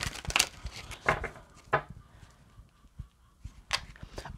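An angel-number oracle card deck being shuffled by hand: a handful of irregular, sharp papery snaps and riffles.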